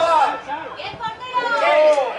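Several people talking at once: overlapping voices, nothing but chatter.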